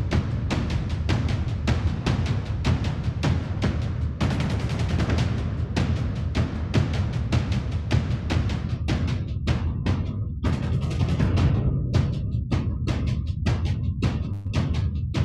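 Soloed percussion track of an orchestral action-film cue: low drums struck in a fast, driving rhythm of several hits a second. The hits stand more apart in the second half.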